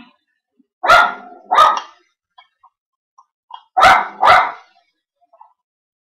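A pet dog giving alert barks: two quick pairs of loud barks, the first about a second in and the second about three seconds later, as though warning that someone is there.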